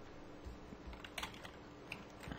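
Faint typing on a computer keyboard: a few separate keystrokes.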